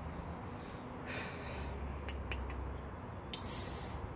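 Fingernails clicking on the tab of a 16 fl oz aluminium can of Bang energy drink, then, near the end, a short sharp hiss of carbonation escaping as the tab starts to break the can's seal.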